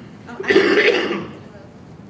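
A woman clears her throat once, loudly, into a handheld microphone, about half a second in.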